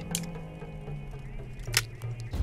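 Two sharp metallic clicks from a brass-framed revolver's cylinder and action as it is handled, the second one louder near the end, over background music with sustained low tones.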